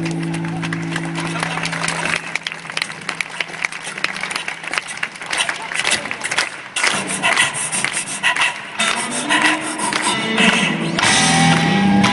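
A live band's held chord rings out and stops about a second and a half in. Audience clapping and crowd noise follow for several seconds, then guitar playing starts near the end.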